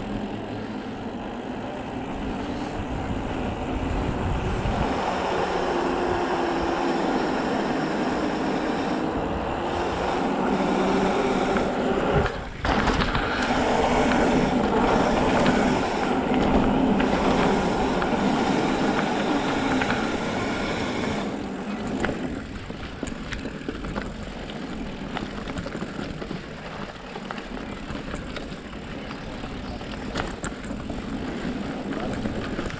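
Tyre rolling noise and wind on the camera from a Specialized Turbo Levo e-mountain bike riding over pavement and rough concrete. The noise is steady, loudest through the middle of the ride with a faint steady whine over it, and eases off about two-thirds of the way through.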